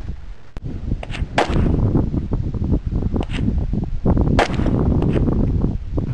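Rifle gunshots on an outdoor range: two loud reports about three seconds apart, with several fainter shots between them.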